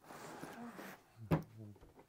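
A man's short non-word vocal sounds: a soft breathy exhale lasting about a second, then a brief voiced sound.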